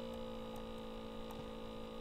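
Steady electrical hum in the recording: several constant tones sounding together, with no speech.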